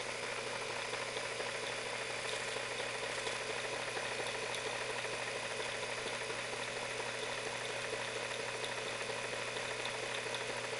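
Modified Visible V8 model engine running steadily at slow idle, about 773 RPM, during its run-in on a test stand: an even mechanical whir.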